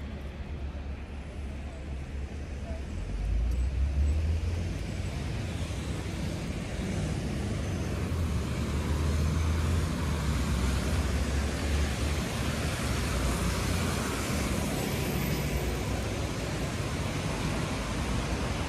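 City street traffic: cars and buses passing on wet asphalt, with tyre hiss over a low engine rumble that grows louder about three seconds in and eases off after about twelve seconds.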